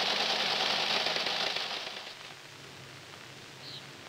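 Teleprinter terminal clattering steadily as it runs, fading out about two seconds in.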